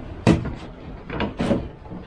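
Volvo 240 door card being prised off the door, its retaining clips popping out of the door frame with two sharp snaps about a second apart and a smaller one just before the second.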